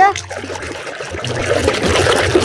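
Soapy water sloshing and splashing, with the crackle of foam, as a plastic toy is scrubbed and squeezed by hand in a basin of suds.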